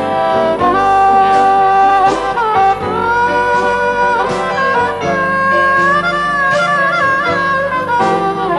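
Harmonica playing a slow instrumental solo of a country ballad over a backing band, with long held notes that bend and slide between pitches.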